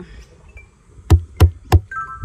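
Playground drum struck three times in quick succession about a second in, the hits roughly a third of a second apart, each short and deep.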